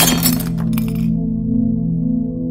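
Sound effect for an animated title: a sudden crash with clinking that dies away within about a second, over sustained background music.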